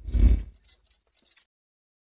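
Logo-intro sound effect: one heavy, deep hit with a short rattling tail that fades within about a second.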